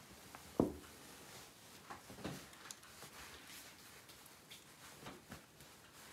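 Quiet room with a few faint, scattered handling sounds; the clearest is a single short knock a little over half a second in, a small glass bowl being set down.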